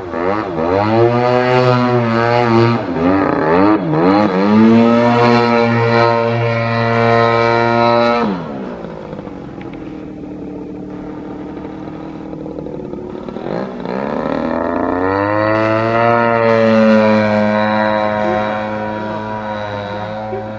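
Engine of an 85-inch Extreme Flight Extra 300 EXP model aerobatic plane in flight. Its pitch swings up and down over the first eight seconds, then it throttles back to a lower, quieter drone. It climbs again at about fourteen seconds and holds a higher, steady pitch.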